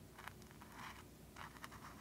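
Faint, scratchy strokes of a small paintbrush dabbing acrylic paint onto a canvas, several short strokes in a row.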